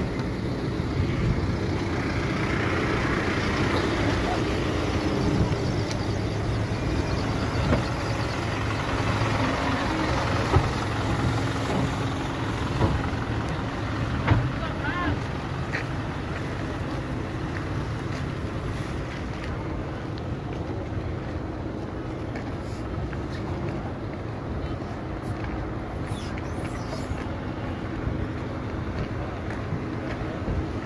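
Slow, jammed traffic in a crowded parking lot: car and van engines running, with voices in the background. A few short knocks stand out in the first half.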